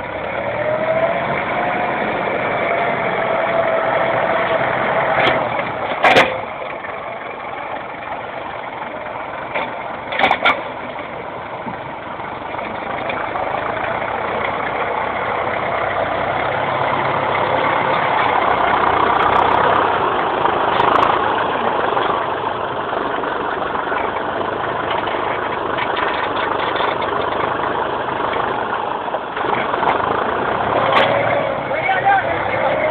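IMT farm tractor diesel engine running under load, its pitch rising just after the start and its level building steadily through the middle. Two sharp knocks stand out, about six seconds and ten seconds in.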